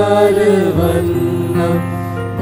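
A devotional hymn being sung in church with instrumental accompaniment: long held, slowly gliding sung notes over steady sustained low notes.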